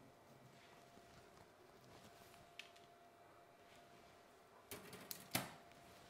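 Near silence: quiet room tone with a faint steady hum. A few faint clicks come near the end, from small bonsai scissors being handled.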